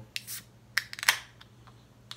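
Aluminium beer can being cracked open, its pull tab worked by hand: a brief hiss near the start and a few sharp clicks, the loudest about a second in.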